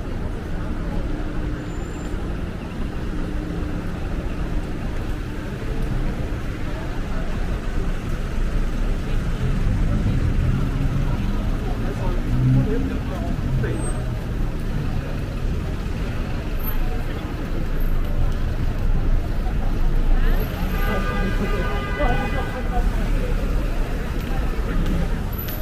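Busy city street traffic running past, with a steady rumble of passing cars and buses. A brief high whine comes near the end.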